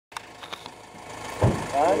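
A few faint clicks, then a man's voice calling out "bhaiya" near the end.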